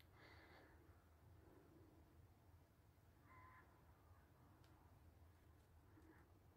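Near silence: room tone with a low hum and a couple of faint, brief soft sounds.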